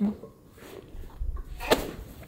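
A single sharp crack near the end: the joints of the neck popping under a chiropractic neck manipulation.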